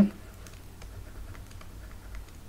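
Faint, irregular light clicks and scratches of a pen stylus writing on a tablet.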